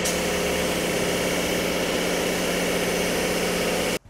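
Paint spray gun spraying: a steady hiss of compressed air over the even hum of a running motor in a spray-painting workshop.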